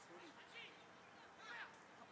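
Near silence, with a few faint, distant shouts from football players on the pitch.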